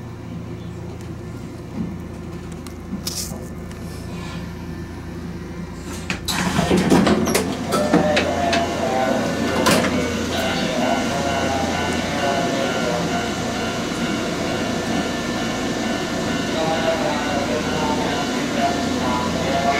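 Cab interior of a Nankai electric train pulling to a stop: a low, steady hum. About six seconds in there is a sudden knock, and after it the sound turns louder and busier, with voices or an announcement mixed in.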